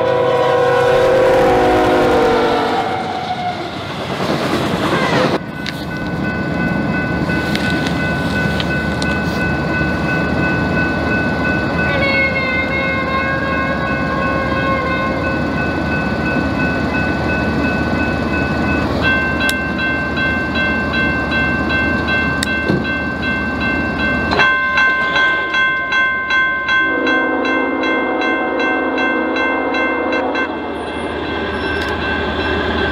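Diesel locomotive horn sounding as the train reaches the crossing, its chord dropping in pitch as the locomotive passes, then the steady rumble and clickety-clack of the train rolling by, with a steady high whine over it for much of the time. Near the end a crossing bell rings over the passing cars and a horn sounds again.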